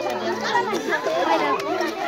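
Several people chattering over one another in a crowded group, with no one voice standing out.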